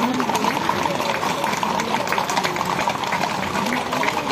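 Shod hooves of a column of Camargue horses clopping irregularly on the asphalt as they walk past close by, over a background of crowd voices.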